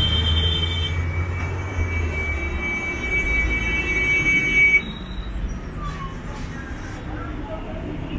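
Road traffic: a heavy vehicle's low engine rumble that fades about three seconds in, with a steady high whine over it that cuts off suddenly about five seconds in. After that only quieter street noise remains.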